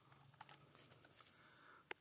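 Near silence: faint outdoor quiet with a few soft clicks, a couple about half a second in and one near the end.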